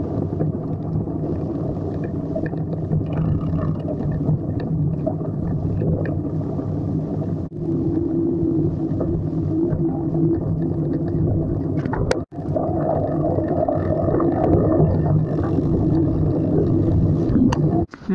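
Bicycle descending a gravel track, heard from a handlebar-mounted camera: a steady low rumble of wind on the microphone and tyres on loose gravel. It breaks off briefly about 7 and 12 seconds in.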